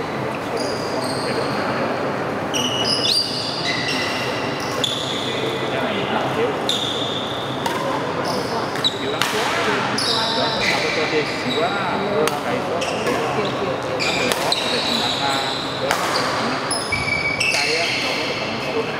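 Badminton rally: racket strikes on the shuttlecock and repeated squeaks of shoes on the court mat, over background voices.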